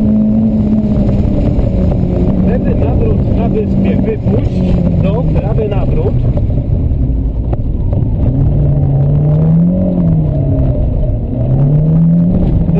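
Renault Clio Sport rally car's engine running hard under load, heard from inside the cabin. The revs hold steady, drop about four seconds in, then climb and fall twice near the end as the car is driven through the corners.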